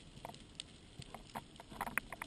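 Underwater ambience during a dive: a faint hiss with scattered sharp clicks and crackles, bunched together near the end.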